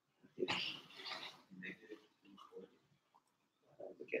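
Faint, indistinct vocal sounds, a person muttering too quietly for words to be made out; the loudest comes about half a second in.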